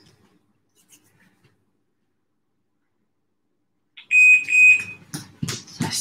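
Near silence, then about four seconds in an electronic interval timer gives two high, steady beeps to signal the start of the next 30-second exercise. A few footfalls thud on the gym mat as running on the spot begins.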